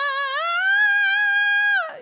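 A woman's singing voice demonstrating a sobbing 'cry' quality on one sustained vowel. About half a second in it slides up to a higher note, is held there with a slight waver, and stops just before the end.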